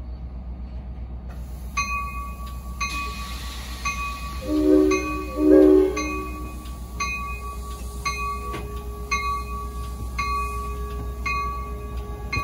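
A grade-crossing bell starts ringing about two seconds in and keeps a steady beat of roughly a strike and a half a second. Midway, the train's horn sounds two short blasts, the signal that the train is proceeding. A low steady rumble from the train runs under it all as the train pulls out.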